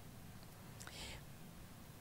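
Near silence: faint room tone through the microphone in a pause in speech, with a soft breathy hiss about a second in.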